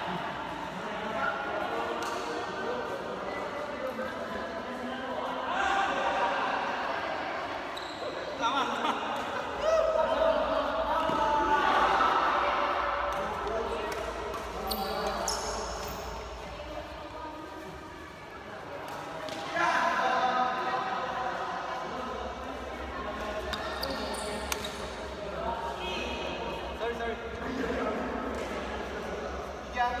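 Badminton rally: rackets repeatedly striking a shuttlecock in sharp, irregular hits, with voices in the background of a large hall.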